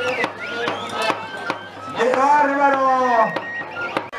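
Live band music: a steady percussion beat of two or three strokes a second under held wind-instrument notes, with a long drawn-out pitched call about two seconds in.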